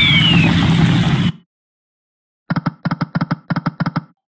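EGT Shining Crown slot game sound effects. A loud electronic win jingle with a falling sweep cuts off about a second and a half in. After a short silence comes a rapid run of short clicks, several a second.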